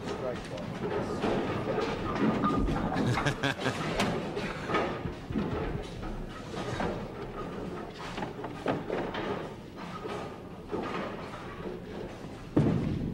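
Bowling lane sounds under indistinct background chatter: a bowling ball lands with a low thump about two and a half seconds in and rolls, followed by scattered knocks and a sharp crack about four seconds in.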